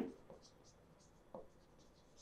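Faint pen strokes on the glass screen of an interactive whiteboard as a word is handwritten, with one short soft sound a little over a second in.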